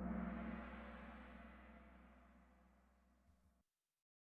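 Kahoot quiz answer-reveal sound effect: a single gong-like crash that rings and fades away over about three and a half seconds, then cuts off abruptly.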